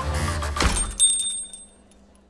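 Small shop-door bell on a curved spring bracket rings: a click, then bright, high ringing tones that fade away over about a second.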